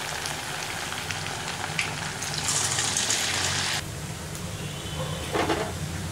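Sago bondas deep-frying in hot oil: a steady sizzle with fine crackling. It grows louder a little past the middle and then drops off suddenly, with a few small clicks after.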